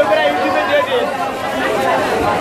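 Crowd chatter: several voices talking over one another in a continuous hubbub, as heard at a busy market stall.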